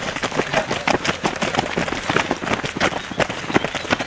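Footsteps of a stream of runners passing close by on a path: a dense, irregular patter of many overlapping footfalls.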